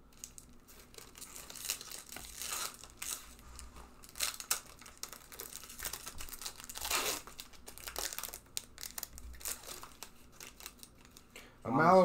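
Foil Pokémon booster-pack wrappers crinkling and being torn open, in scattered bursts, the loudest about seven seconds in.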